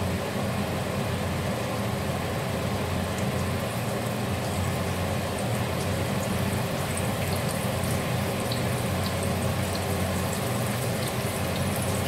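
Chickpea-flour fritters sizzling in shallow hot oil in a frying pan as they are laid in one by one, with small crackles coming more often in the second half, over a steady low hum.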